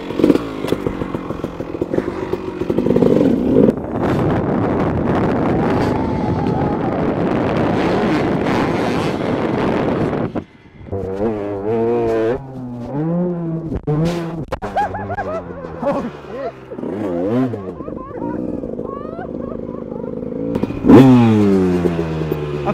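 Dirt bike engine revving up and down over and over, its pitch rising and falling, with a steep drop in pitch near the end as it comes off the throttle. A dense, steady noise fills the first half before a sudden break.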